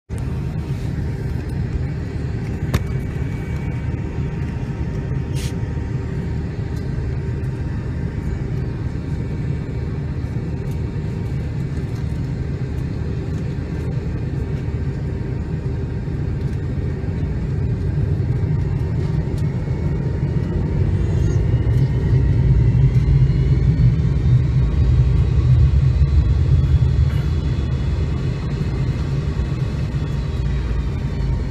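Cabin noise of an MD-88 taxiing: a steady low rumble from its Pratt & Whitney JT8D jet engines. It grows louder in the second half, as a rising whine comes in about two-thirds of the way through.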